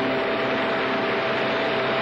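Audience applauding at the end of the song, a steady even clatter of clapping. A last held note from the accompaniment still sounds underneath it.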